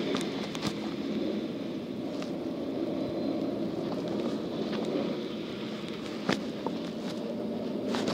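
Steady low rumble of a truck's diesel engine idling, with a few sharp clicks from handling the engine parts, the loudest about six seconds in.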